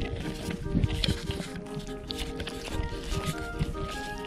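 A pony foal grazing close to the microphone, tearing and chewing grass in irregular crunchy bites, the loudest about a second in. Background music with sustained notes plays throughout.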